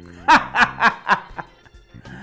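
A man laughing: a run of about five short bursts of laughter, fading away within the first second and a half.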